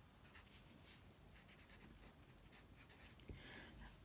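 Very faint scratching of a felt-tip marker drawing and writing on paper, in short irregular strokes.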